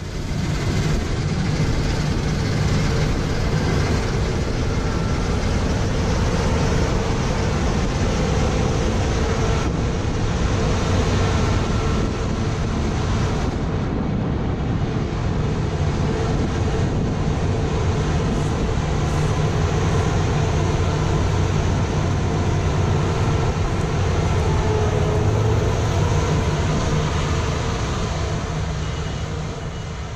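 Claas Tucano 420 combine harvester running under load while cutting wheat: a loud, steady machine drone with a faint steady whine over a low rumble.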